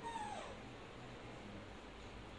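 A baby monkey giving one short, high whimpering call right at the start, falling in pitch over about half a second.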